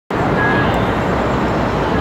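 Steady wash of city traffic and street noise, with a brief faint high tone about half a second in.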